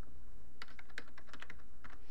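Computer keyboard keys typed in a quick run of about a dozen clicks as a password is entered.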